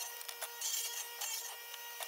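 Table saw cutting plywood, heard as sped-up time-lapse sound: a steady high whine broken by several short bursts of cutting noise.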